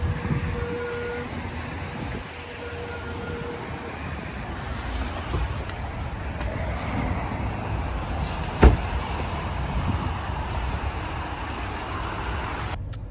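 Steady road-traffic noise, with one sharp click about two-thirds of the way through.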